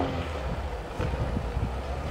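Off-road vehicle's engine running far off, heard as a low, steady rumble mixed with wind on the microphone.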